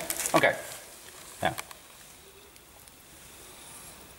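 A spoken "okay" and one short vocal sound, then quiet room tone with no distinct mechanical sound.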